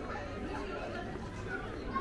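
Outdoor street ambience: faint chatter of passers-by over a steady low background hum.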